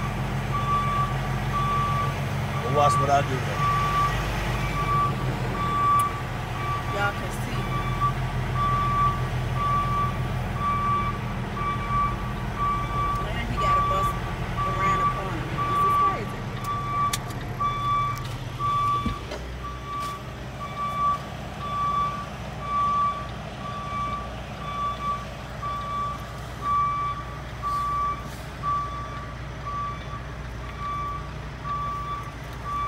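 Truck reversing alarm beeping about once a second at one steady pitch, over the low running of a semi truck's diesel engine as the truck backs up, heard from inside the cab. The engine note drops about two-thirds of the way through.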